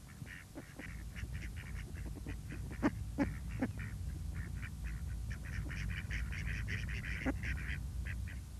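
A flock of waterfowl calling: many short, repeated calls, growing busier over the second half, over a low steady rumble.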